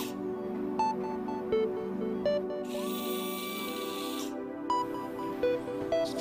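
Soft background music with sustained low notes and a sparse plucked melody. About three seconds in, a high-speed surgical drill spins up and runs for about a second and a half with a steady whine and hiss, then stops.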